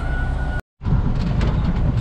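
Semi truck's engine and road noise heard from inside the cab: a steady low rumble, with a thin steady whine in the first half second. The sound drops out completely for a moment just after half a second in, then the rumble returns.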